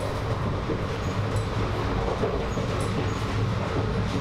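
Steady low rumble of the Mahamana Express passenger train running, heard from inside the coach, with faint light clicks over it.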